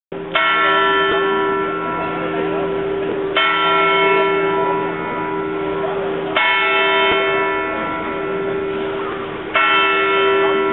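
The Zytglogge clock tower's bell striking four slow strokes, about three seconds apart, each stroke ringing on with a lingering hum until the next.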